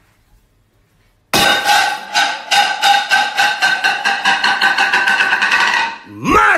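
A plate lands hard on a tiled floor without breaking, then keeps ringing and rattling as it wobbles against the tiles, about six rattles a second, for several seconds.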